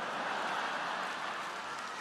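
A live stand-up audience laughing and applauding, a steady wash of crowd noise.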